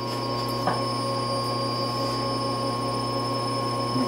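Steady machine hum from a Supermax YCM-16VS CNC milling machine standing powered with the spindle in neutral, a low hum under a high, even whine, with one light click under a second in.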